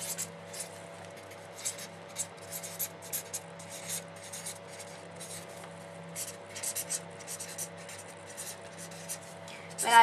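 Writing by hand: a run of quick, irregular scratchy strokes, over a steady low hum.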